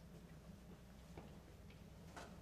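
Near silence: room tone with a steady low hum and a few faint scattered clicks, about one and a quarter seconds in and again shortly after.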